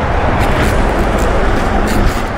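Steady rumble and hiss of road traffic, with a few short faint clicks.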